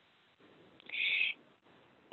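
A single short high-pitched sound, about half a second long, about a second in, over an otherwise quiet line.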